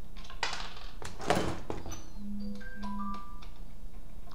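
Smartphone message notification: a few short bell-like chime tones and two brief low vibration buzzes, about two and three seconds in. Before it there is some rustling of hands on hardware.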